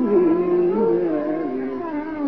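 Carnatic classical music in raga Begada: a melodic line sliding and oscillating in pitch (gamakas) over a steady drone, with a downward glide near the end.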